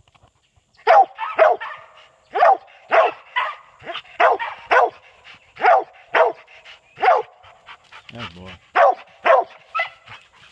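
Kemmer cur / Tennessee mountain cur cross treeing: a steady run of sharp, loud barks, about one to two a second, starting about a second in, the dog barking up a tree at game it has treed.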